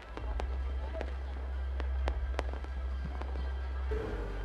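Aerial fireworks display going off: a continuous low rumble with several sharp bangs at uneven intervals.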